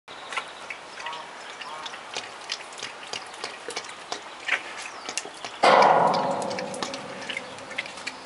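Brown bear sucking milk from a baby bottle, a run of wet clicks and smacks from its mouth. A sudden loud rush of noise breaks in about five and a half seconds in and fades over a couple of seconds.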